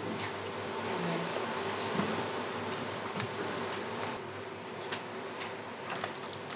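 Courtroom room tone: a steady low electrical hum with a few faint scattered ticks and small handling noises.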